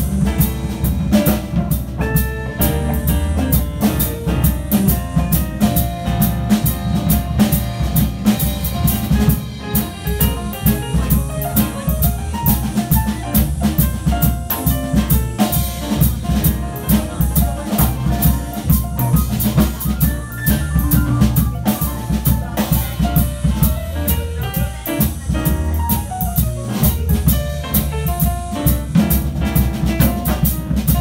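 Live jazz combo of piano, electric guitar, upright bass and drum kit playing an instrumental passage, with a steady swinging beat from the drums and a walking bass line under the melody.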